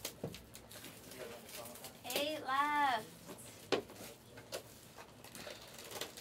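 A voice drawing out one long, sing-song word for about a second, two seconds in, over faint scattered taps and rustles of cardboard hobby boxes being handled.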